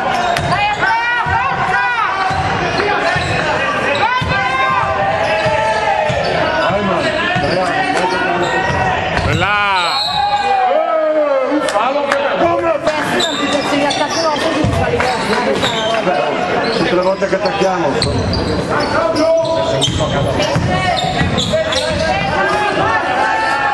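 Basketball game in a sports hall: a ball bouncing repeatedly on the wooden court amid players' and coaches' shouts and calls.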